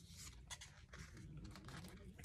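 Faint paper rustle and soft ticks as sticker-book pages and paper stickers are handled.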